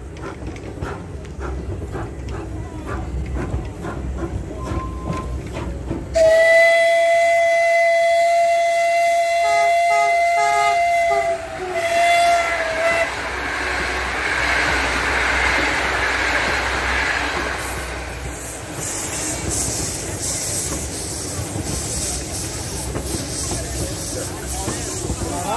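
Rail noise with faint clicks, then about six seconds in a loud, steady train whistle blast lasting about five seconds, followed by a shorter blast. After that comes the rushing noise of a moving train, with a high hiss near the end.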